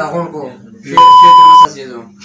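A single steady, high censor bleep tone about a second in, lasting a little over half a second and much louder than the voices around it.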